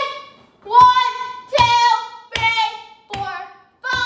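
A boy punching a freestanding rubber BOB punching dummy, about five blows a little under a second apart. Each blow is a sharp smack followed by his short, loud held shout.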